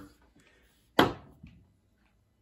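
A single sharp knock about a second in, followed by a faint smaller tap.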